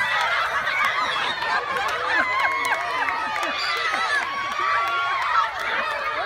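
A large group of children yelling and squealing at once: many high voices overlapping in a steady, excited din.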